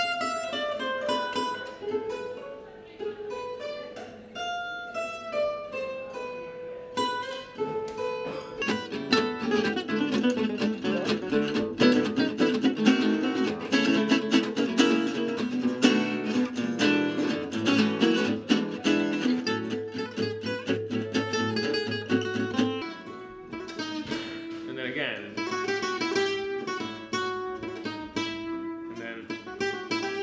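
Acoustic gypsy jazz guitars playing. A single-note melody line comes first. From about eight seconds in, a fuller passage of fast picked lines over rhythmic chord strumming takes over, then thins out after about twenty-three seconds.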